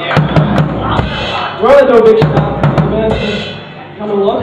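Live drum kit played on stage, with kick and snare hits and two cymbal crashes, about a second in and near three seconds. A voice rises over it briefly in the middle.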